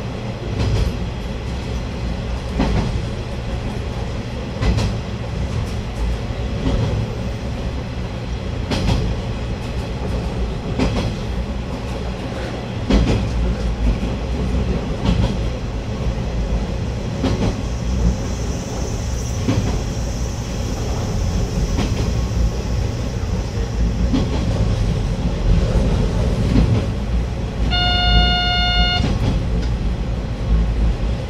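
KiHa 120 diesel railcar running along jointed track: a steady engine and running rumble with the click of rail joints about every two seconds. Near the end the railcar's horn sounds once, a short steady blast of about a second.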